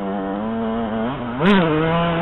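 Yamaha YZ125 two-stroke single-cylinder engine pulling under throttle, its note coming up suddenly and holding steady, then rising sharply and dropping back about one and a half seconds in, with a brief knock at the peak.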